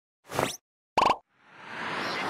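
Logo-animation sound effects: two short pitched pops about half a second apart, the first rising in pitch, then a whoosh swelling in about a second and a half in.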